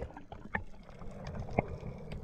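Underwater sound picked up by a submerged camera: a low steady rumble with scattered sharp clicks and faint bubbling from air rising after a bubble ring is blown.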